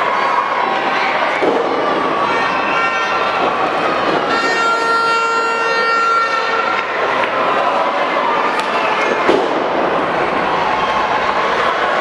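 Arena crowd shouting and cheering steadily through a wrestling match, with a steady horn blast held for about two seconds in the middle.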